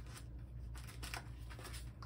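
Rustling and light handling noises, a few short scuffs, as things are moved about and set aside on a table, over a steady low room hum.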